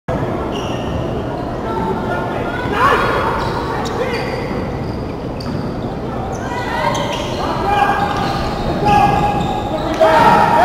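A basketball bouncing on a hardwood gym floor, with sneakers squeaking in short high chirps and a few sharp knocks, in an echoing hall. Voices call out, louder near the end.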